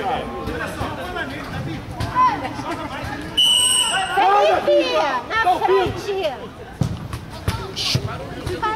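Voices of spectators and players calling and chattering around the pitch. About three and a half seconds in there is one short blast of a referee's whistle, the loudest sound here, signalling the restart of play.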